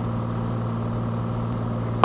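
Steady low drone of a Cessna 182 Skylane's piston engine and propeller in level cruise, heard in the cabin, unchanging throughout.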